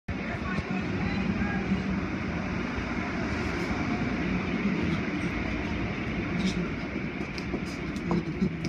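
Automatic car wash tunnel machinery running: a steady, rumbling noise.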